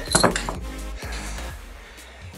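Background music, with a brief metallic clink about a quarter second in as the metal clips of resistance tubes are handled.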